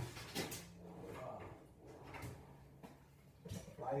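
Faint knocks and clicks of objects being handled, over a low steady hum.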